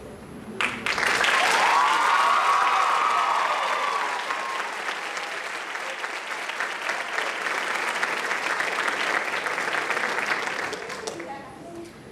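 Audience applauding for about ten seconds, starting suddenly about half a second in and fading away near the end. A single voice calls out in a long, arching cheer over the clapping during the first few seconds.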